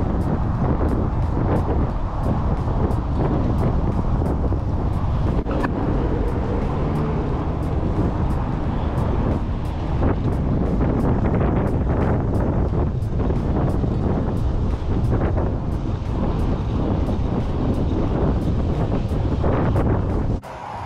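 Steady, loud wind noise buffeting the microphone while riding a bicycle along a paved path.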